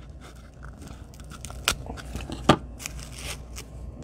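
Scissors cutting seam binding ribbon off its spool, the ribbon tearing as it is cut, with faint rustling and two sharp clicks near the middle.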